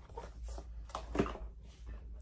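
A cardboard camera box being handled: several short rustles and knocks, the loudest a little over a second in.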